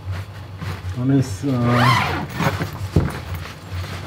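Zip on a dinghy's fabric storage bag being opened, with fabric rustling and a short knock about three seconds in.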